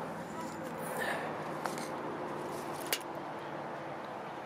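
Quiet outdoor background with a faint steady hum and two small clicks, one about a second and a half in and one about three seconds in.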